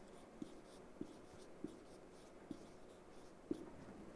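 Marker pen writing on a whiteboard, faint, with about five light taps of the tip against the board spread through the strokes.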